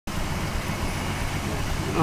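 Newly installed 232 straight-six of a 1966 AMC Rambler Classic 770 running steadily on its first start-up.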